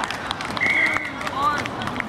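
Voices of players calling out across an outdoor rugby pitch, with a short high steady call about half a second in and scattered light clicks.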